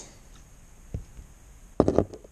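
Small metal ballpoint-pen kit parts being handled and set down on a workbench: a soft low knock about a second in, then a quick cluster of sharp clicks near the end.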